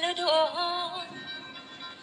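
A woman singing a Thai song, holding one word on a long wavering note that fades away in the second half.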